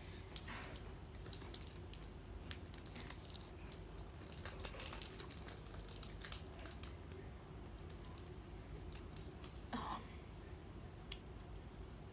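Close crackling of a Twix bar's foil wrapper being handled in the fingers: clusters of small crisp clicks, thickest in the first half, with chewing of the bar.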